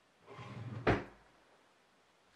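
A brief scrape or shuffle, then a single sharp knock just under a second in, as something is handled and set down or bumped on a tabletop.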